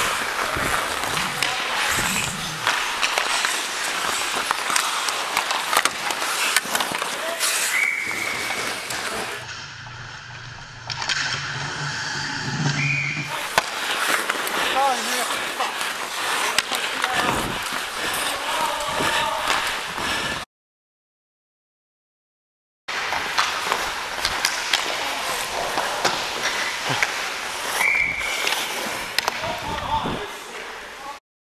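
Ice skate blades scraping and carving on the ice, with sharp clicks and clacks of sticks and puck, heard close up from a player's helmet. The sound goes quieter for a few seconds about a third of the way in, and drops out entirely for about two seconds later on.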